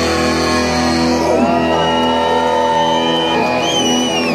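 Live rock band with distorted electric guitar holding long sustained notes, while people shout and whoop over it with rising and falling cries.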